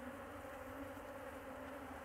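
Honeybees buzzing around an opened hive: a faint, steady hum.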